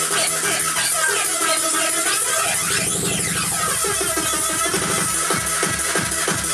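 Makina, fast hard electronic dance music, playing in a DJ mix. A sweeping effect rises and falls midway, then a fast steady kick drum comes in over the last second or so.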